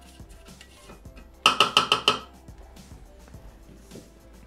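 A spatula tapped quickly against the stainless steel mixing bowl of a Thermomix, about six ringing metallic knocks in under a second, about one and a half seconds in, to shake off the scraped sugar mixture. Faint background music runs underneath.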